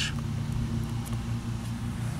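Steady low hum inside a car's cabin, several fixed low pitches holding level, with no distinct clicks.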